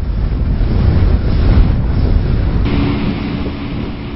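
Wind buffeting the microphone over open sea, with waves. A little under three seconds in, a steady boat engine hum and the hiss of water come in, from a small fishing boat under way.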